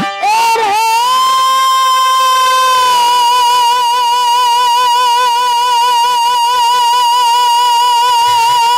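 A rasiya folk singer's voice rises into one long, high held note, which takes on a steady vibrato about three seconds in.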